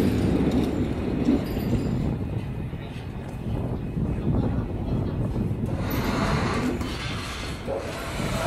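Continuous low rumble and rattle of hard wheels rolling over concrete, as a hand pallet truck moves a loaded pallet of boxes.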